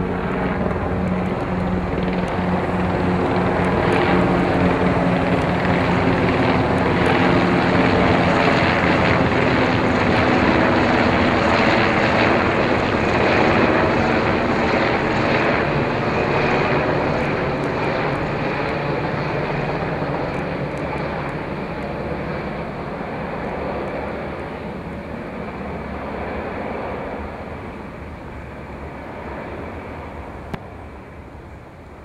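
Military helicopter flying overhead, its rotor and engine noise swelling to a peak about halfway through, then fading as it moves off.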